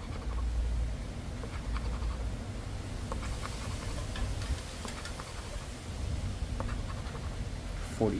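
A coin scratching the coating off a paper scratch-off lottery ticket in short repeated strokes, with wind rumbling on the microphone.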